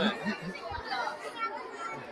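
Chatter: several people talking at once, with no clear single speaker.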